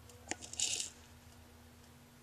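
Loose flameworked glass pieces tumbling inside a kaleidoscope's dry-cell object chamber as it is turned: a small click, then a short bright clatter of glass a little over half a second in.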